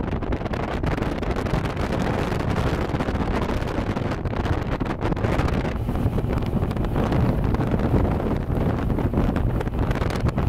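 Heavy wind buffeting the microphone on a bass boat running fast across open water. Under it, the steady run of the boat's Mercury OptiMax Pro XS two-stroke outboard and the hull on the chop.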